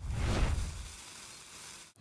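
A whoosh-and-rumble sound effect, like a small explosion, that starts suddenly and fades away over about a second and a half, with a short click past the middle.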